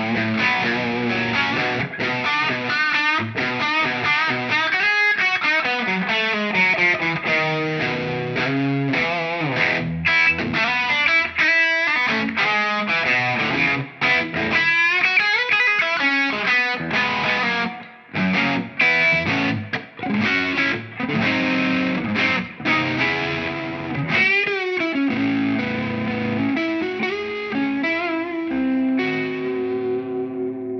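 PRS S2 Singlecut McCarty 594 electric guitar playing a lead passage of quick single notes with string bends, with a few brief breaks in the phrasing.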